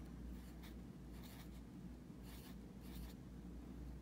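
Felt-tip pen writing figures on lined spiral-notebook paper, heard as faint pen strokes in short runs.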